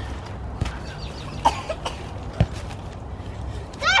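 Children playing on a trampoline: a few dull thumps of bodies and a ball hitting the mat, the strongest about two and a half seconds in, over a low steady rumble, with brief faint child vocal sounds.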